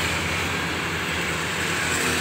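Steady low engine hum and street noise from passing road traffic.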